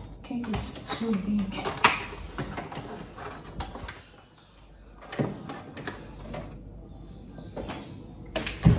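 Someone rummaging in an open refrigerator: items knocking and clinking against the shelves, with a sharp knock about two seconds in and another about five seconds in.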